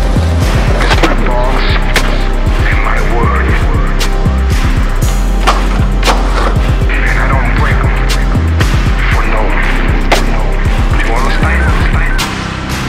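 Hip-hop backing track with deep bass notes and a steady beat. Skateboard sounds are mixed in with it: wheels rolling on concrete and sharp tail pops and landings.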